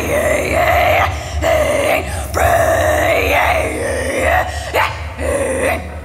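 A woman's singing voice in a wordless, raspy, strained vocal passage, about four long loud phrases with short breaks between them, over a low backing track.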